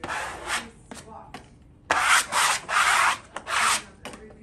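Plastic wallpaper smoother rubbed hard across freshly hung wallpaper at the wall's corner: a short swipe at the start, then four quicker, louder rubbing strokes in the second half.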